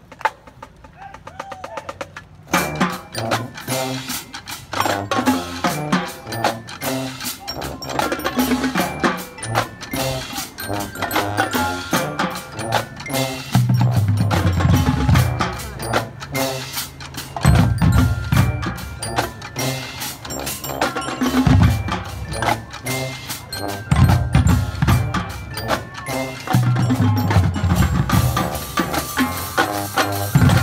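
Marching drumline and front ensemble playing: mallet keyboards ringing over snare and bass drums. The playing starts about two and a half seconds in and builds, with heavy low drum hits coming in from about halfway.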